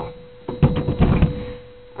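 A quick run of knocks and clunks over about a second: handling noise as a large heat lamp and the reptile tank it sits on are moved.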